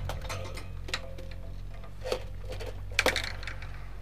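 Handling noise from a robot puppet being moved about: a few light clicks and knocks, with a quick cluster of them about three seconds in, over a steady low hum.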